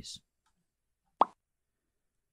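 A spoken phrase ends right at the start, then silence broken by a single short pop a little after a second in.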